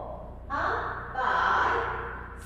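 Two breathy vocal sounds from a woman, a short one about half a second in and a longer one from just past a second, over a low steady hum.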